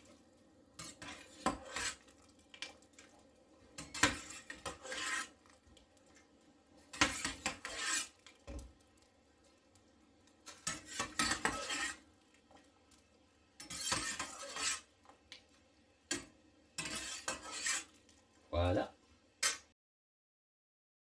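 Metal pot and kitchen utensils clattering and scraping in short, irregular bursts with quiet spells between, as blanched broccoli is handled after its boiling.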